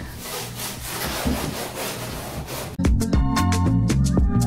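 Sponge scrubbing a bathtub surface in quick repeated strokes, a rasping rub. About three-quarters of the way through it cuts off abruptly and music with a drum beat begins.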